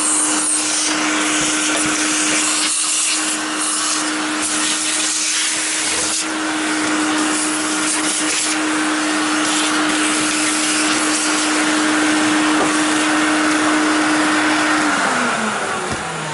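Vacuum cleaner running steadily, a rushing suction noise over a constant motor hum, as it sucks dust from a computer case's vented side cover. Near the end the motor is switched off and its pitch falls as it winds down.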